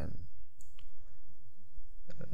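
A few sharp clicks of a computer mouse, one a little under a second in and another near the end.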